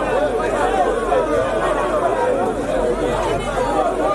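Several voices talking over one another, a steady babble of chatter.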